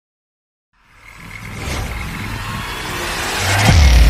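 Logo-reveal intro sound effects: after a moment of silence, a rumbling, hissing riser swells steadily louder and ends in a deep boom with a falling sweep just before the end.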